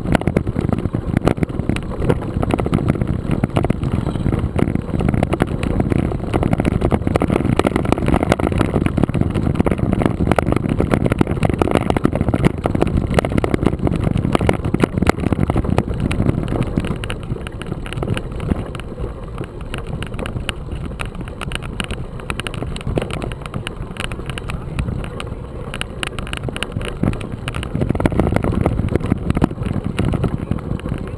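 Mountain bike rolling over a loose gravel dirt track: a dense crunch and rattle of stones under the tyres and the shaking bike, with wind rumble on the microphone. It eases off for several seconds past the middle and picks up again near the end.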